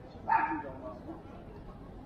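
A dog barks once, short and sharp, about a third of a second in, over the murmur of a busy pedestrian street.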